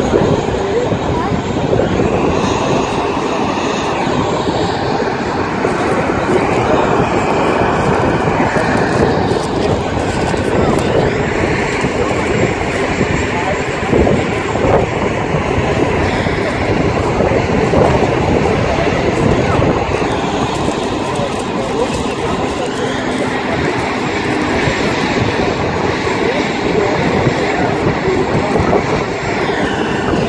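Busy city-square ambience: a steady wash of road traffic mixed with the chatter of crowds, with no single sound standing out.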